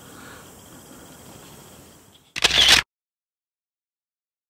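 Faint room hiss, then about two and a half seconds in a single short camera-shutter sound, after which the audio cuts to dead silence.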